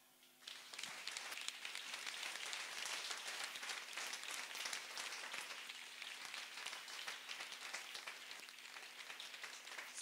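A church congregation applauding, a dense patter of many hands clapping. It starts about half a second in and eases off a little toward the end.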